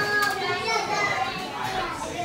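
Children's voices and talk from people around, with no clear words.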